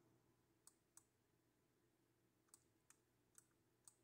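Faint computer mouse clicks, about six at uneven intervals, over near silence.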